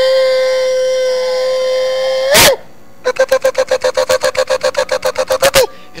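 Shofar (ram's-horn trumpet) blown: one long steady blast that ends in a sharp upward break, then after a brief pause a fast run of short staccato notes, about eight a second, closing with a rising break.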